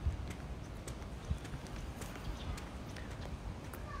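Footsteps on a paved street, heard as irregular short knocks over a steady low rumble.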